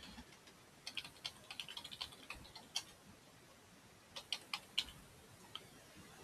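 Faint typing on a computer keyboard: a quick run of keystrokes about a second in, a single key near three seconds, then a few more keystrokes past four seconds.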